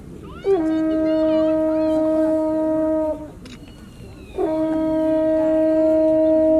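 Brass horn blown to call the deer to gather: two long held notes on the same pitch, each about two and a half seconds, with a short pause between.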